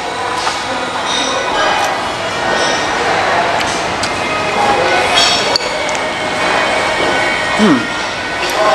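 Restaurant dining-room hubbub: indistinct voices with dishes and cutlery clinking now and then, one sharp clink about five and a half seconds in. Near the end a man gives a short closed-mouth 'mm' of approval while eating.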